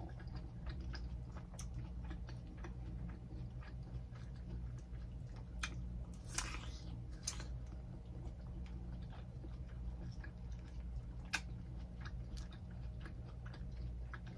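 Chewing and biting into a slice of honeydew melon, many small mouth clicks with a few louder bites about six seconds in and again near eleven seconds, over a steady low hum.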